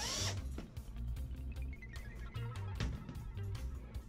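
Background music with a repeating bass line. A power tool whirs briefly and stops a fraction of a second in, during reassembly of the washer's panels with screws.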